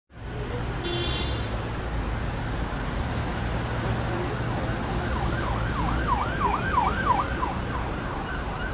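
City street traffic with a steady low rumble. From about five seconds in, an emergency vehicle's siren sweeps rapidly up and down, a few times a second.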